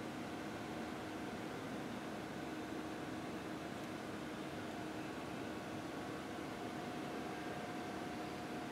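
Steady fan-like hiss and hum with two faint steady tones in it, unchanging, with no knocks or other events.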